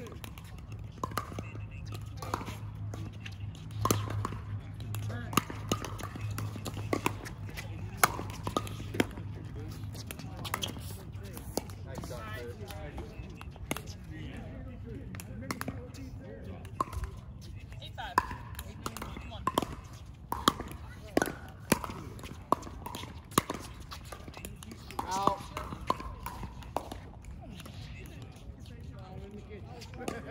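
Pickleball paddles hitting a plastic ball in a rally: sharp, short pops at irregular intervals, thickest in two stretches, with voices talking in the background.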